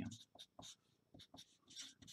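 Artline 90 felt-tip marker writing on paper: a run of short, faint strokes as letters are drawn.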